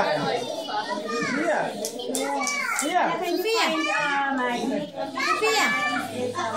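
A group of children talking and exclaiming over one another, many excited, high-pitched voices at once.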